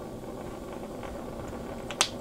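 Steady low background noise of a small room, with a couple of faint ticks near the end.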